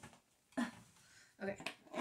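Quiet room tone, broken by a short vocal sound about half a second in and a spoken "okay" near the end.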